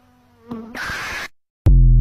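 A faint buzzing bee sound effect, then about half a second in a loud harsh burst that cuts off abruptly just after a second. Near the end comes the loudest sound: the TikTok end-card jingle, a deep electronic tone stepping upward in pitch.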